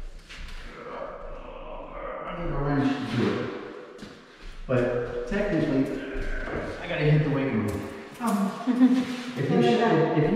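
Mostly people talking, with a few short clicks.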